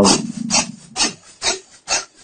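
Green plastic silage-bag liner sheet rustling and crinkling as it is handled and folded, in short scratchy bursts about every half second.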